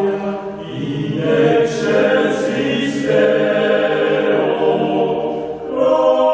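Male vocal ensemble singing in close harmony, unaccompanied, with sustained chords and three hissed 's' consonants near the middle; a phrase ends and a new one begins near the end.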